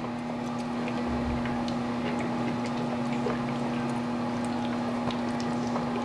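HHO gas torch rig, fed straight from an electrolysis generator through a water bubbler, running while its flame cuts into an aluminium drink can: a steady low hum with an even hiss and light scattered ticks.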